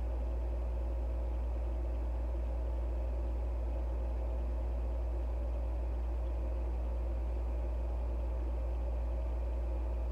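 Steady low hum with a faint hiss, unchanging throughout, like a running fan or other machine in the room.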